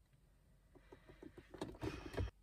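A stiff leather bag being handled and lowered: a run of faint creaks and rustles that grows louder toward the end.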